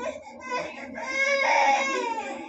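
A young child's voice crying: short whimpers, then one long high wail from about a second in, the loudest sound here.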